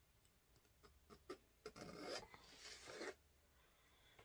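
Faint pencil strokes scratching on paper while sketching lines: a few short strokes about a second in, then two longer strokes in the middle.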